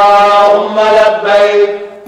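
A solo voice chanting long, held notes with small steps in pitch, fading away near the end.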